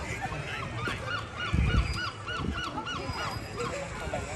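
An animal calling in a quick series of about nine short calls, each rising and falling in pitch, about four a second, over outdoor background noise. A low thump comes about one and a half seconds in.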